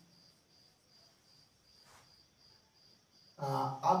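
Faint cricket chirping, an even run of high pulses, with one faint click about two seconds in; a man's voice starts again near the end.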